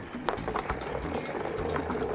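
Background suspense music with a held tone, over rapid, irregular clicking of balls rolling round a spinning wooden wheel and knocking against the pegs on its rim.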